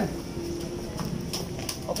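A few short, light clicks over steady market background noise.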